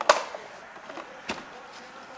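Small scissors snipping at a stitch in a finger: two sharp clicks about a second apart, the first the louder.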